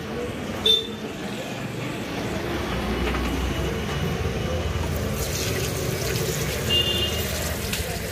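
A short clink under a second in, then a tap turned on about five seconds in, with water running into a ceramic washbasin and splashing over a hand being rinsed.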